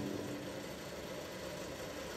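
Faint, steady background hum and hiss with no distinct events.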